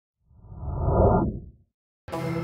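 A single whoosh sound effect on an animated logo intro. It swells to a peak about a second in and dies away half a second later, heavy in the low end.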